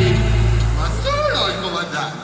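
A low held note at the end of the backing music fades out over the first second and a half. About a second in, a voice calls out with a sliding pitch.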